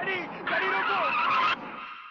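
Car tyres screeching as a car pulls away hard, with a man's shouting underneath; the screech cuts off sharply about one and a half seconds in and its tail fades out.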